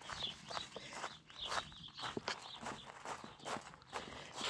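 Footsteps crunching on gravel, about two steps a second.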